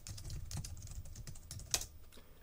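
Typing on a computer keyboard: a quick run of keystrokes, with one louder key strike a little before the end.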